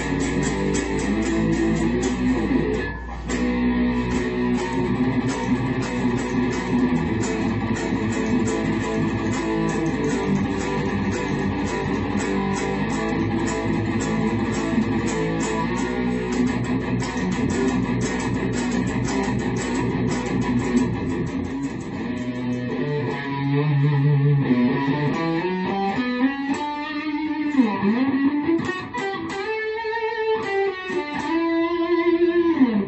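Handmade nine-string fanned-fret electric guitar played through a Fender Champ XD amp with light compression, a fast, continuous run of picked notes. From about three quarters of the way in the playing slows and several notes bend in pitch.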